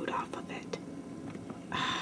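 A person whispering, with a short breathy burst near the end.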